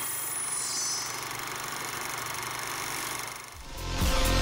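Steady hiss of an editing transition effect, with a few faint falling high tones about a second in. Electronic music with a beat comes in near the end.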